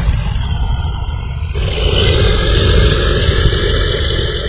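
Loud rumbling sound effect for an outro logo: a deep rumble throughout, joined about one and a half seconds in by a steady, harsher roar that holds on.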